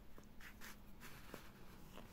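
Faint rustling and scratching of hands handling crocheted yarn while sewing hair onto a doll, with a few short brushes about half a second and a second in.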